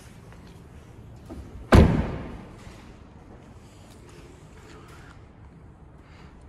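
A car door on an Audi A5 convertible being shut once with a single heavy thud about two seconds in, followed by a few faint handling sounds.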